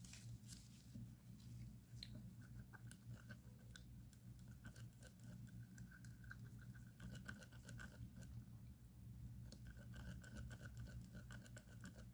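Faint, irregular scraping and clicking of a wooden stir stick against a silicone mixing cup as tinted epoxy resin is stirred, over a low steady hum.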